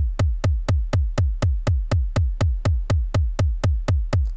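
Bass drum sample played by the JR Hexatone Pro sequencer app in steady eighth notes at a tempo of 122, about four hits a second. Each hit is a short kick that falls in pitch.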